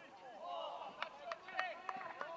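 Several voices shouting and calling across a football pitch, overlapping. There are four sharp knocks in the second half.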